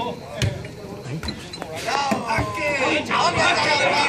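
A football struck with a single thud about half a second in, followed by a couple of lighter knocks. Then, from about two seconds in, many spectators' voices shout and talk over one another.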